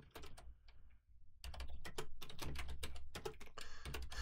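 Typing on a computer keyboard: a few scattered keystrokes, a short pause about a second in, then a fast, steady run of keystrokes.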